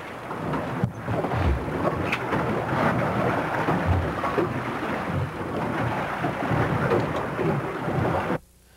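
Wind rushing over the microphone on an open boat at sea: a steady noise with low rumbling buffets now and then, over the wash of the sea.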